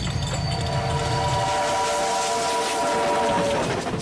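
A steam locomotive's whistle blows one long blast of several tones sounding together, with a hiss beneath it. It starts over the rhythmic low rumble of the running train, which dies away about halfway through. The whistle stops shortly before the end.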